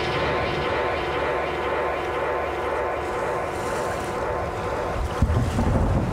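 Ambient drone soundscape: a few steady held tones over a rushing, wind-like noise and a low rumble, with a sudden low thump about five seconds in followed by a heavier rumble.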